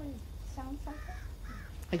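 Crow cawing a few times in the background, short arched calls spaced about half a second apart.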